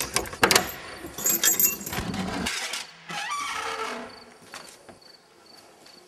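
A large old iron key rattles and clicks as it turns in a church door's iron lock, with a run of sharp metallic clicks over the first two seconds or so. About three seconds in comes a brief creak as the door swings open, and then it goes quiet.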